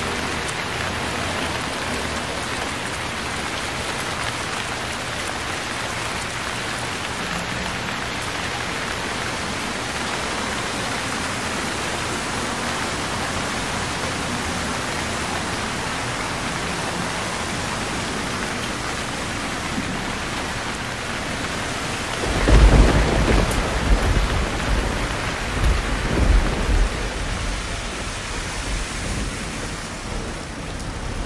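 Heavy rain falling steadily on a wet street. About 22 seconds in, thunder breaks loudly and rumbles for several seconds in a few rolling peaks before fading.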